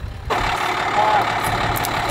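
A vehicle engine running steadily at idle, starting suddenly about a third of a second in, with a low hum under a steady even noise.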